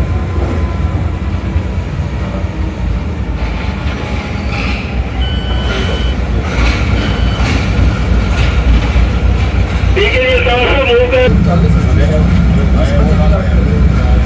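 Steady low rumble of a diesel locomotive heard from inside its cab as it rolls slowly along a station platform, with voices from the platform crowd over it and a louder wavering call or shout about ten seconds in.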